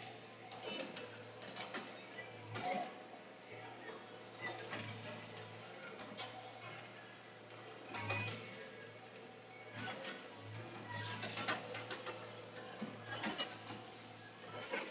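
Log loader running at a faint, steady low drone, heard from inside its cab, with scattered clicks and knocks as the grapple works loading pine logs.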